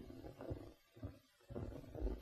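Very quiet film soundtrack: only a faint low rumble of room tone and a few soft, indistinct blips, with no clear sound event.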